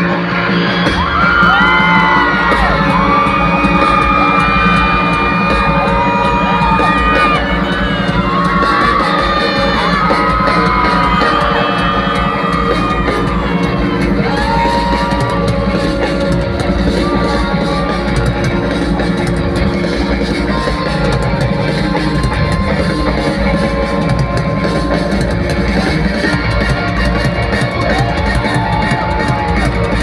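Live pop-rock band playing loudly through a stadium sound system, with sung melody lines over sustained guitar chords, and the crowd yelling and cheering along.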